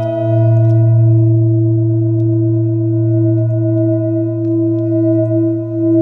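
Metal singing bowl ringing after a strike, a sustained tone of several layered pitches. The higher overtones fade within the first second, while the main tones hold steady with a slow wavering pulse.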